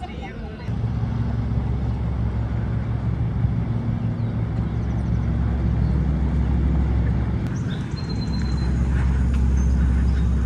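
A motor engine running steadily with a low hum, which dips and changes briefly about three quarters of the way through, then carries on.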